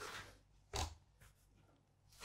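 Two faint, brief scrapes of a plastic dough scraper cutting through bread dough onto a wooden worktop: one right at the start, a sharper one just under a second in.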